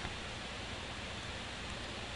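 Steady, even hiss with a faint low hum: the recording's microphone and room noise floor, with no other sound.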